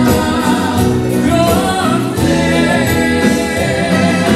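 Live Italian dance orchestra playing, with a male and a female vocalist singing together over the band's drums, saxophone and trumpets.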